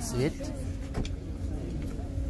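A voice trailing off at the very start, then low steady background noise with a faint hum and a single click about a second in.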